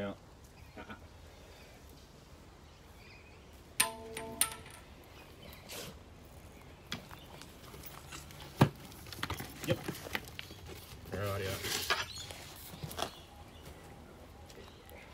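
Quiet handling noises: scattered knocks and clicks, the sharpest about two-thirds of the way through. Brief voice sounds come about four seconds in and again near the end.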